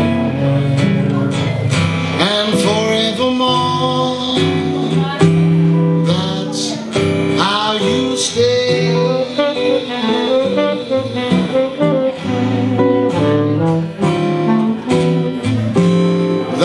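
Live small band playing a slow ballad without vocals: a saxophone carrying long, bending melody notes over acoustic and electric guitar accompaniment.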